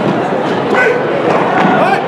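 Short, sharp shouts echoing in a gym hall, a couple of yells over steady background chatter, as a taekwondo sparring match gets under way.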